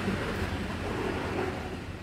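Outdoor background noise with a low wind rumble on the microphone, fading out gradually.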